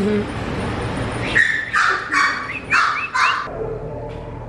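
A dog barking about five times in quick succession, starting about a second in, the last barks rising in pitch at their ends.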